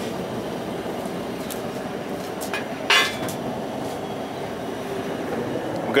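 Propane burners of a salt-firing kiln running with a steady rushing noise. A few light clicks and one sharp clink about three seconds in, metal or brick knocking at the kiln's port.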